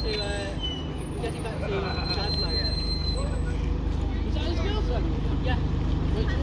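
Single-deck Alexander Dennis Enviro200 diesel bus pulling away and turning close by, its engine running steadily and getting louder as it nears, with crowd chatter over it.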